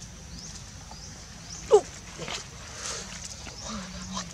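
Macaque giving one short, loud squeal that falls in pitch, about a third of the way in, followed by a few fainter short calls. A faint high chirp repeats in the background.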